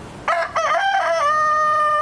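A rooster crowing once: a cock-a-doodle-doo starting about a quarter second in, a few short broken notes and then one long held final note.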